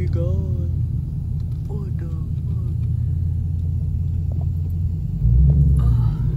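Steady low rumble of a car driving, heard from inside the cabin, swelling louder for about a second near the end.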